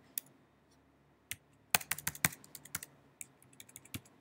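Typing on a computer keyboard: a few separate keystrokes, then a quick run of key clicks a little under two seconds in, and a few fainter keystrokes near the end.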